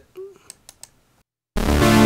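A few faint clicks. Then, about a second and a half in, a Sequential Prophet Rev2 analog polysynth sounds a loud sustained chord through a Neve-style preamp plug-in, which is switched on.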